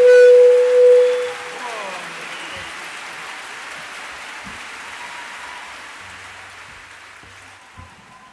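One loud held note lasting about a second and a half, ending in a short downward glide, then concert audience applause that slowly dies away.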